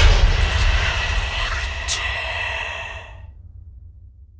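Intro sound effect for the logo reveal: a loud sudden hit that trails off into a deep rumble, fading away over about three seconds.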